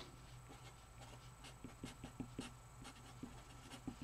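Felt-tip marker writing on paper: faint, irregular scratches of the pen strokes as words are written out.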